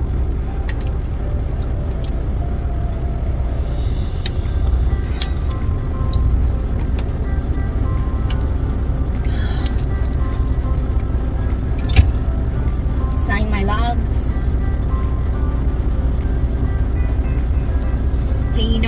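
Steady low rumble of a semi-truck's diesel engine idling, heard inside the cab, under faint background music, with one sharp knock about twelve seconds in.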